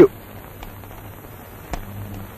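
A man's word cut off at the start, then the steady hiss and low hum of an old film soundtrack, with one sharp click near the end as a telephone receiver is put down on its cradle.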